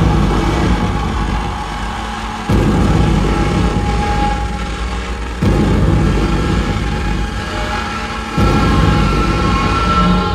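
Amplified electronic noise music played live: a heavy, low rumbling drone that surges in suddenly about every three seconds and fades between surges, with a few thin held tones above it.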